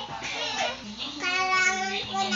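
A child's voice singing, holding one long steady note through the second half.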